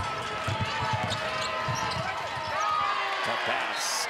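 A basketball being dribbled on a hardwood court, with sneakers squeaking and a steady arena crowd murmur underneath. A brief sharp noise comes near the end.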